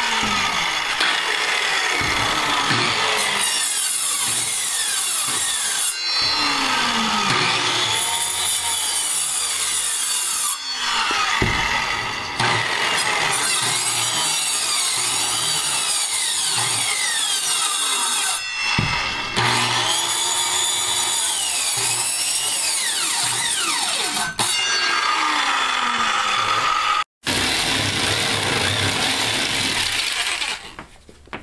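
Porter-Cable circular saw cutting through OSB, the motor's whine dipping and recovering under load. Several cuts follow one another with short breaks between them, and the sound drops out suddenly for a moment near the end.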